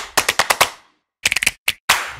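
Sharp sound-effect clicks on an animated title. They come quickly and fade over the first second, then after a brief gap there is a fast flurry of clicks and two more single ones.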